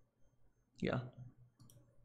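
A few faint, quick computer mouse clicks near the end, after a short spoken syllable.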